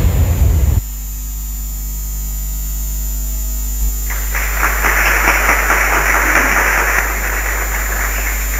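Steady electrical mains hum from a sound system. It is laid bare when a loud noise cuts off suddenly just under a second in. From about four seconds in a rough rushing noise rises over it for a few seconds.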